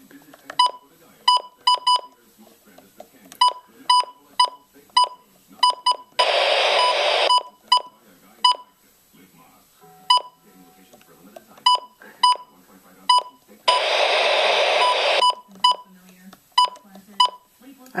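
A glitching Midland WR-100 weather alert radio beeps over and over: many short, high beeps in irregular clusters, each with a click. Twice, about 6 and 14 seconds in, it lets out a loud burst of hiss lasting over a second.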